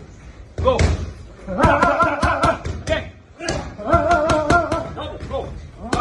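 Boxing gloves hitting padded focus mitts in quick combinations, a run of sharp slapping hits in several bursts. A held, wavering voice sounds alongside two of the bursts.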